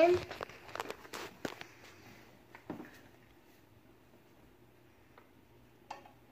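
A few light knocks and clicks as a plastic jug of cooking oil is handled in a kitchen, mostly in the first three seconds, then quiet room tone with one small knock near the end.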